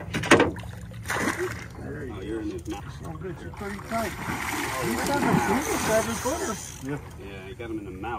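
A hooked alligator thrashing at the water's surface beside a boat, splashing for several seconds. A single sharp knock comes just before the splashing begins.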